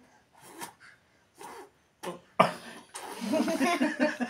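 A toddler blows out several short puffs of breath and then gives a sharp cough, imitating someone smoking a beedi. Voices chuckle near the end.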